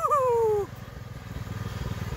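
Small engine of a mud-modified lawn tractor running steadily under load on a hill climb, a low even pulsing that grows slightly louder in the second half. A person shouts "woo" over it in the first half second.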